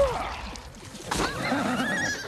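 A cartoon horse whinnying on an animated film's soundtrack: a wavy, trembling call from about a second in, after a short curved cry at the start.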